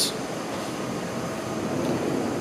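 Steady rushing background noise with no distinct events, like an air conditioner or fan running in a room.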